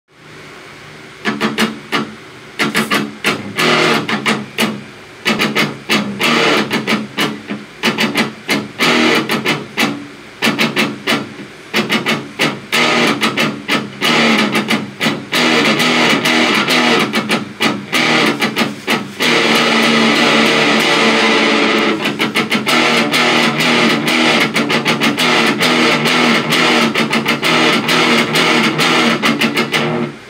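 Amplified electric guitar played in choppy rhythmic phrases of picked chords with short breaks between them, then a stretch of held notes and steadier, continuous playing from about two-thirds in.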